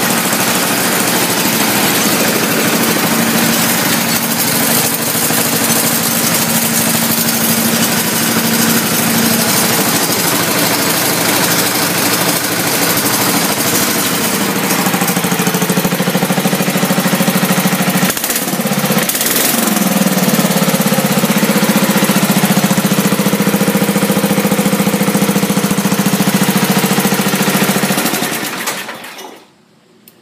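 Sears garden tractor's small gasoline engine running steadily. About halfway through its note shifts up and strengthens, with a brief dip a few seconds later. It cuts out near the end.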